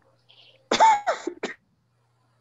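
A person clears their throat with a short, voiced cough in three quick bursts, starting less than a second in.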